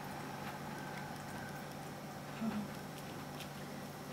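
Steady low electrical hum of room tone, with a brief soft low sound about halfway through.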